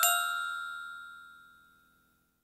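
The last notes of a short glockenspiel-like chime phrase ringing on and fading away within about a second and a half.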